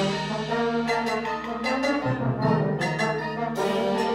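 High school symphonic wind band playing live, with brass to the fore in held chords; the low notes shift to a new chord about halfway through.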